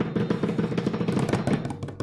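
Drum roll sound effect: a fast, even roll of drum strokes that tapers off near the end.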